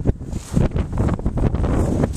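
Wind buffeting a handheld camera's microphone: a loud, uneven low rumble that surges and dips.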